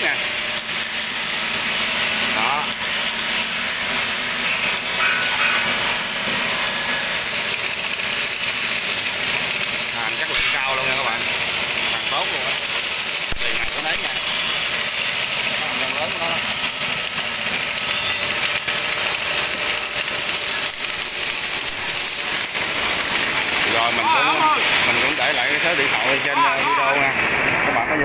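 Steady, loud mechanical noise with a high hiss, which cuts out about four-fifths of the way through; voices talk in the background near the end.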